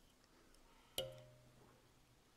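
Near silence, broken by one sharp click about a second in that rings briefly: a small knock of the tier's tools against the fly-tying vise.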